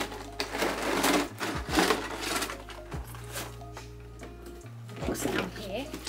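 Clear plastic figure packaging crinkling and rustling as it is worked out of a cardboard box, in bursts during the first two seconds and again near the end, over background music.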